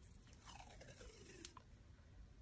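Faint crackle of a mini roll of paper washi tape being peeled off and unrolled, with a faint tone that falls in pitch over about a second.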